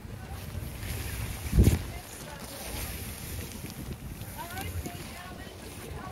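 Wind buffeting the microphone as a low, uneven rumble, with one loud short buffet about one and a half seconds in.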